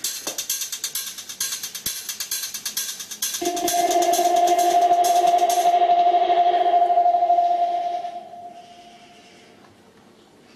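Electronic dance music played on a pad-grid music app on a tablet: a fast hi-hat pattern with no kick drum, then about three and a half seconds in a loud, steady held synth tone that fades out near the end as the track finishes.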